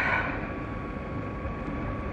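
Steady engine and road noise of a moving car heard from inside the cabin, with a brief rush of sound at the very start.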